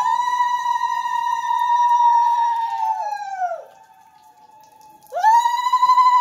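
A conch shell (shankha) blown in long steady blasts of one high note. The first blast sags in pitch and dies away about three and a half seconds in. A second blast swoops up to the same note about five seconds in.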